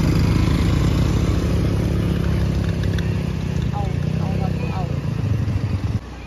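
Quad bike (ATV) engine running close by, growing a little quieter over the seconds, then breaking off suddenly at the end.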